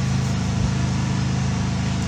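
Steady low mechanical hum with an even hiss over it, running without change.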